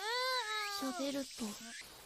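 High-pitched vocal call from the anime's soundtrack playing at low volume: one long drawn-out call that rises and then falls in pitch, followed by a few shorter, lower calls that stop near the end.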